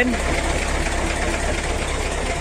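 An engine idling steadily, a constant low hum with no change in speed.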